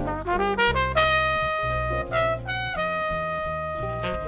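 Jazz trumpet solo: a quick rising run of notes in the first second, then sustained high notes, the last held long to the end, with low bass notes underneath.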